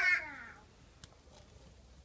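One drawn-out vocal call, falling in pitch, in the first half-second. After it comes quiet with a single faint click about a second in.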